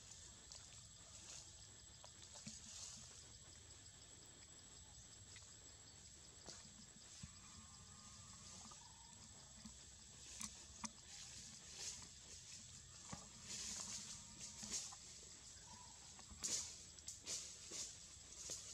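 Near silence: faint outdoor ambience with a steady high-pitched insect drone, and a few brief soft crackles in the second half.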